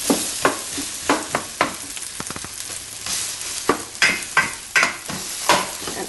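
Lamb and onions frying in a pot while they braise, with a spoon stirring them and knocking and scraping against the pot about a dozen times at irregular intervals.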